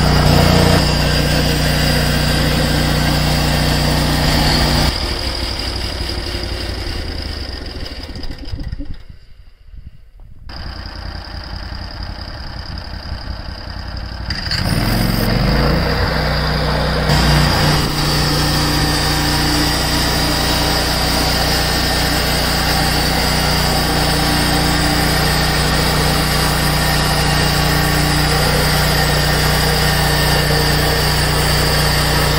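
Engine of a Hud-Son HFE 36 bandsaw mill running steadily as the blade saws red oak and throws out sawdust. About five seconds in the sound falls away to a low level. Around fifteen seconds in the engine revs back up, rising in pitch, and runs steadily again.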